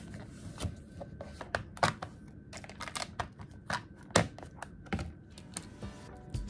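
Paperback workbook pages being flipped and handled on a desk, giving a run of irregular sharp taps and paper rustles.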